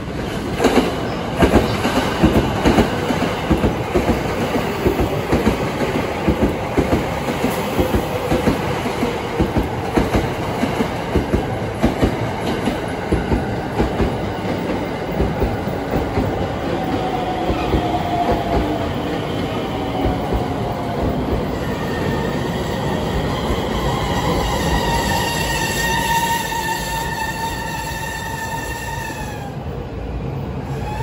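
A 285-series Sunrise Izumo/Seto sleeper train pulls into the platform, its wheels knocking in rapid succession over rail joints and points through the first half. In the second half a high whine falls in pitch as the train brakes.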